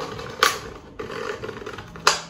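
Hands handling a sheet of paper on a tabletop, with one sharp tap about half a second in, then light rustling and scraping.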